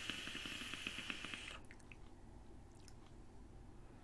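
A draw on an electronic cigarette: air hissing through the device while the heating coil crackles and pops, stopping about a second and a half in.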